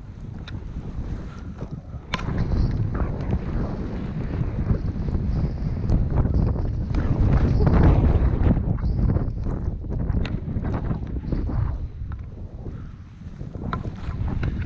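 Wind rushing over the camera's microphone as a skier descends through deep fresh powder, with the swish of skis through the snow and a few sharp clicks. It gets louder about two seconds in and is loudest around the middle.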